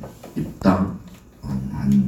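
A man's voice in short, halting, wavering sounds, choked with emotion rather than clear words.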